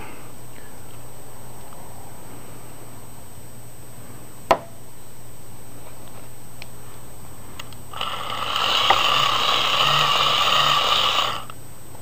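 Hand-cranked dynamo of a vintage Evershed & Vignoles "Wee" Megger insulation tester whirring for about three seconds in the second half, as it is cranked to test a capacitor's insulation. A single sharp click comes about four seconds in.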